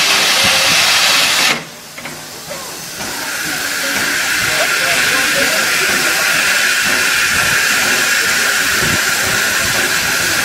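A1 class 4-6-2 steam locomotive 60163 Tornado standing at the platform with steam hissing loudly from it. The hiss cuts off suddenly about a second and a half in and resumes about three seconds in, building to a steady, higher hiss.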